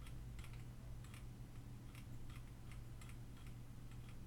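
Faint, irregular clicking of a computer mouse or keyboard being worked, about three to four clicks a second, over a steady low hum.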